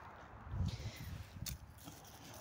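A few soft footsteps on grass and dry fallen leaves, faint, with a light crackle of leaves about half a second in and a single sharp click later.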